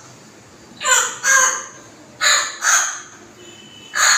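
A bird giving short harsh calls in two pairs, about a second and two seconds in, each pair about half a second apart.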